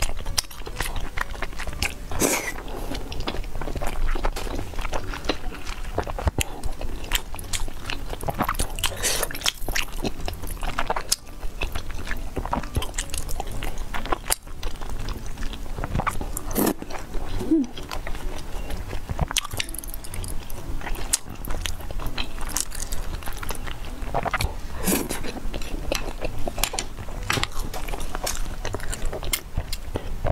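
Close-miked chewing and biting of soft, wet food from a bowl of spicy malatang soup, with many short mouth clicks.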